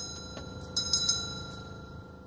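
Altar bells rung at the elevation of the host during Mass: a cluster of small bells sounding twice, a short ring at the start and a stronger one about a second in, each ringing out and fading.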